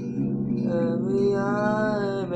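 Acoustic guitar chord ringing, with a man's voice coming in about half a second in on one long held sung note that wavers slightly in pitch.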